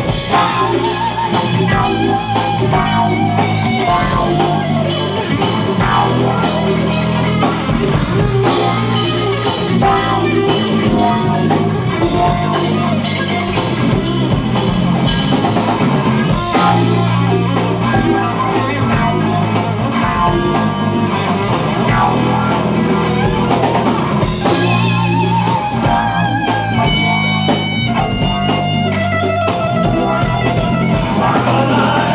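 Live rock band playing: electric guitars and a drum kit, with a guitar lead line whose held notes waver with vibrato.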